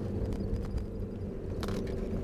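Jeep Cherokee XJ's 2.1-litre four-cylinder turbodiesel engine running steadily, with a few knocks and rattles and a brief clatter near the end.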